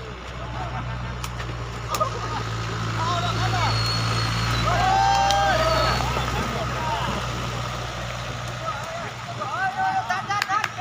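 A motor vehicle's engine running close by, a steady low hum that grows louder to a peak about halfway through and then fades, with people's voices calling over it.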